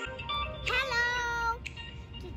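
A child's high voice calling out one drawn-out note, rising and then held for about a second, starting about half a second in, just after background music cuts off.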